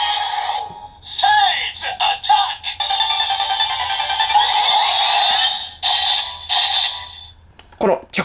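DX Seiza Blaster toy's small speaker playing its special-attack sound for the Kani (crab) Kyutama: electronic voice calls and snipping 'chokin chokin' effects over music. It cuts off shortly before the end.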